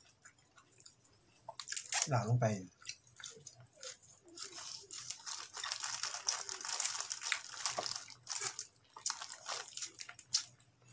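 Dense crackling and rustling as a bunch of fresh herb sprigs is pulled apart by hand, loudest for three or four seconds in the middle, with a few scattered crackles after it.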